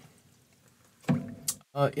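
Near silence for about a second, then a man's hesitant voice ("uh") with one brief sharp click just before it.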